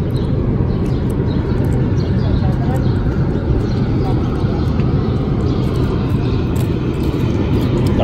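Steady low outdoor rumble, heaviest in the bass and even throughout, with no distinct events standing out.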